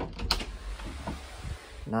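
A sharp click, then about a second and a half of steady hiss and low rumble: handling noise from a handheld phone being moved while it records.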